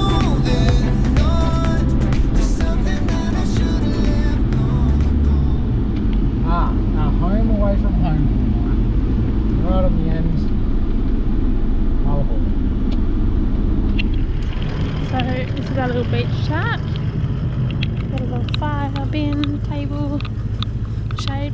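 Steady low rumble of a 2009 Holden Colorado ute driving along a sandy track, heard from inside the cabin, with voices at times over it.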